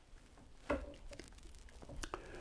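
Quiet room tone with one short, faint click a little under a second in.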